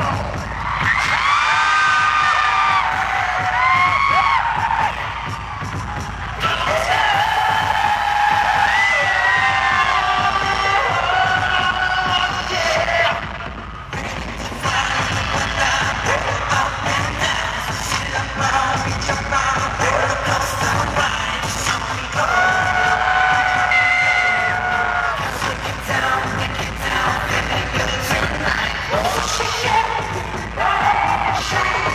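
Loud live K-pop dance track played through a concert hall PA, with a heavy beat and singing, and the audience cheering over it. The music dips briefly about halfway through.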